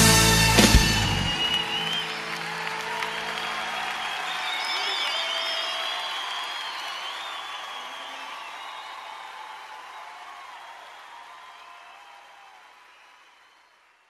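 A live worship band ends its song with last drum and cymbal hits in the first second, then the ringing tail and crowd voices fade out steadily to silence.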